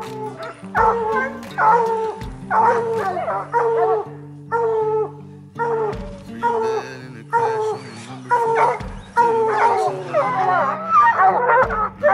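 Hunting hounds baying, one drawn-out bay about every second, with the bays crowding together and overlapping in the last few seconds as more dogs join in. It is the baying of hounds holding a mountain lion up a tree.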